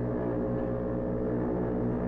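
A ship's foghorn sounding one long, loud, steady low blast that fades away near the end.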